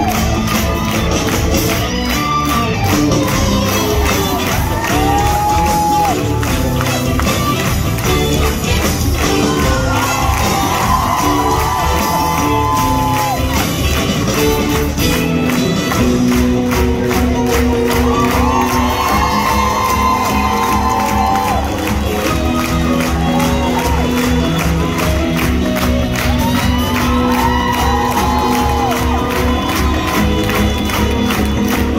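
Live theatre band playing an upbeat curtain-call number with a steady beat, over a crowd cheering.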